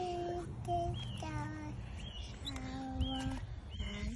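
A toddler's voice singing a string of drawn-out, steady notes, a few held for nearly a second, with short high bird chirps between them.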